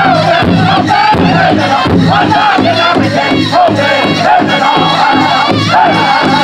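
Powwow drum group of several men singing loudly together over a steady beat struck in unison on a shared big drum.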